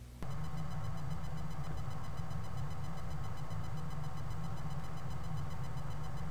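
A steady electrical hum and buzz that starts abruptly a moment in and holds unchanged, low and strong with a thin high whine above it.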